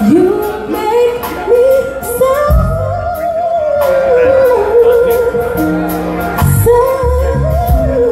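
A woman singing live into a microphone over accompaniment with bass and a beat, her voice sliding up into long, held, ornamented notes.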